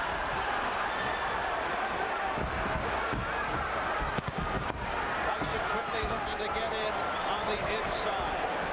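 Boxing arena crowd cheering and shouting steadily, many voices at once, with a few sharp knocks about four to five seconds in.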